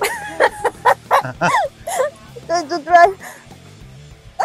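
Voices of people at an attraction: short, high-pitched vocal sounds and brief exclamations with sharply bending pitch, the loudest about three seconds in, over steady background music.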